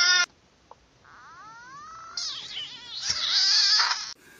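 A frog screaming in distress as a finger pokes at it: rising, wailing cries, then a louder harsh screech that cuts off near the end. A short pitched call from a previous clip breaks off just after the start.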